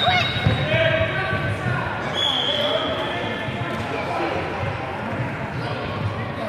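Indoor kids' football game in a reverberant sports hall: children's voices calling and shouting over the thud of a ball being kicked and bouncing on the wooden floor, with two brief high squeaks.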